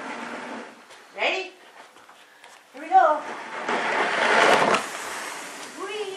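Plastic sled being dragged across an indoor floor, a rushing scrape that is loudest a little past halfway. Short high vocal calls sound before it, about a second in and again near the middle.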